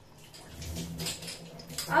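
Whole green moong curry with water just added simmering in an open aluminium pressure cooker on a gas burner: a faint, steady hiss over a low hum, with a few soft ticks.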